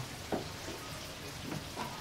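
Steady hiss of tempura frying in a pot of hot oil, with one faint click about a third of a second in.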